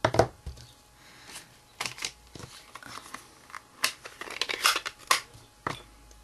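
Crafting hands handling a clear rubber stamp, its acrylic block and a plastic ink pad case: crinkling plastic and a series of sharp clicks and taps, the loudest right at the start, with a longer crinkly stretch about four seconds in.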